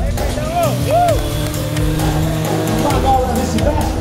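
Music and a voice over loudspeakers, with a sport motorcycle's engine rising and falling in pitch as it is revved, loudest about a second in.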